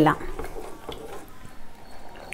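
Wooden spatula stirring a thick tamarind gravy in an enamel pot: soft, low stirring and scraping with a few faint clicks.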